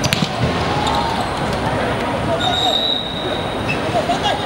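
A football kicked hard on an outdoor court, one sharp thud just after the start, over shouts from players and onlookers. A steady high-pitched tone comes in a little past halfway and holds until just before the end.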